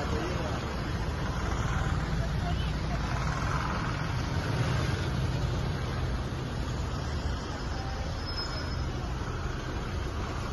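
SUVs in a slow convoy rolling past one after another, their engines running at low speed, with indistinct chatter of people in the background.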